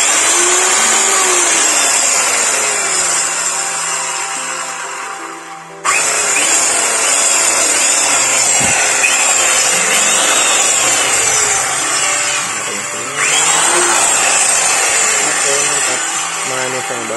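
Orion corded circular saw motor test-run with no blade fitted: a steady high whine at full speed. The trigger is squeezed again about six and thirteen seconds in, each time a sudden jump back to full speed after the sound has sagged.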